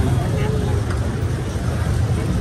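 Busy street noise: a steady low rumble of road traffic close by, with snatches of passers-by talking.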